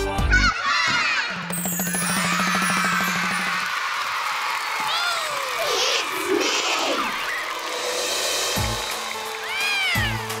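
Cartoon title-sting sound effects: a buzzing hum with fast pulses, then a run of rising-and-falling swoops and swishes, before a music intro starts near the end.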